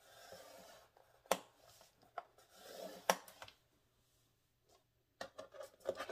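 Scoring stylus drawn along a groove of a paper scoring board through heavy 110 lb cardstock: a faint scraping stroke at the start and another around three seconds in, with a few light clicks of the tool and paper between.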